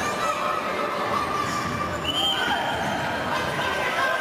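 Futsal players' shoes squeaking on the sports-hall court floor during play, over the echoing noise of the hall and spectators.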